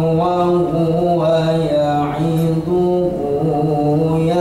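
A young man's solo voice reciting the Quran in melodic Arabic chant (tilawah) into a microphone, long held notes that bend and waver in ornamented phrases.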